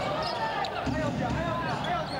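Live basketball game heard from the stands: a basketball being dribbled on the court under a steady murmur of spectators' voices in the arena.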